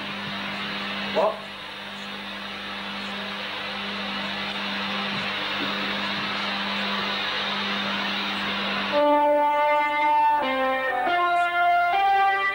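Steady hiss and hum for most of the clip, with a brief click just over a second in; about nine seconds in, an electric guitar starts playing a phrase of sustained single notes that step in pitch.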